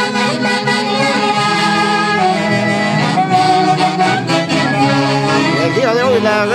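Saxophone-led folk band (a Peruvian orquesta típica) playing a tune, with several instruments sounding together over a bass line.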